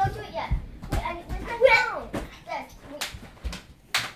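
Children's voices in short bits, mixed with several dull thumps of feet and bodies landing on a foam gymnastics mat.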